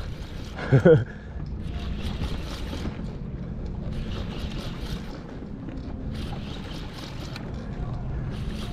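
Spinning reel being cranked steadily to wind in braided line against a hooked fish, over a steady low rumble. A short vocal grunt comes from the angler about a second in.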